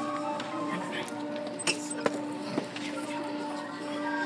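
Concert band of wind and brass instruments playing slow, held chords, with two sharp clicks about halfway through.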